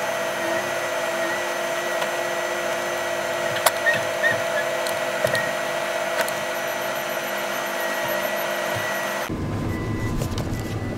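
Combine harvester running, heard from inside its closed cab: a steady whirring hum with several high whine tones and a few light clicks. About nine seconds in, it gives way abruptly to a lower rumble.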